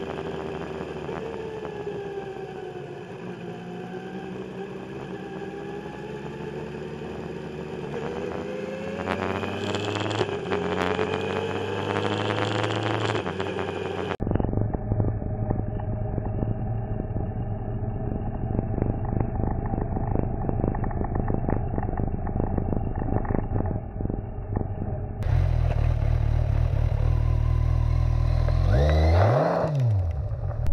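Kawasaki Z1000 inline-four motorcycle engine running, its pitch gliding and then rising as it revs up after about eight seconds. Abruptly it gives way to a duller, muffled steady vehicle rumble. For the last few seconds the engine is loud and full again, with a sharp rev that dips and climbs near the end.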